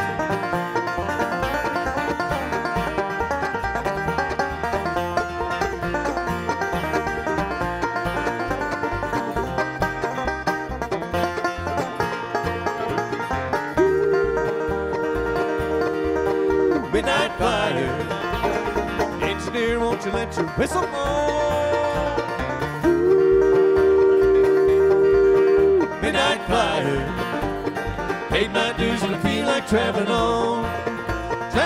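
Live acoustic bluegrass band playing an instrumental break: fast picked banjo, guitar and mandolin over upright bass. Twice, about a third of the way in and again past the middle, long held two-note fiddle chords of about three seconds each ring out loudest over the picking.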